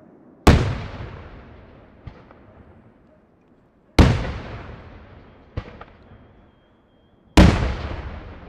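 Daytime fireworks shells bursting in the sky: three loud bangs about three and a half seconds apart, each trailing off in a long echo, with two fainter bangs between them.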